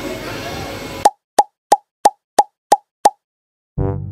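Seven short, identical pops, about three a second, set against dead silence: an edited popping sound effect. Before them there is about a second of noisy background, and brass music comes in shortly before the end.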